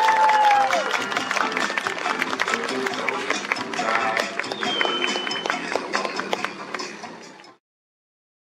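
Audience applauding with music playing; the sound fades out near the end.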